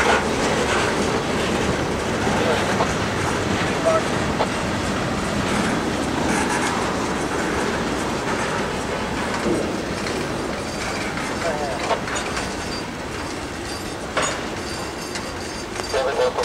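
Freight cars rolling past, wheels rumbling steadily with clickety-clack over the rail joints, a few knocks, and a faint wheel squeal now and then.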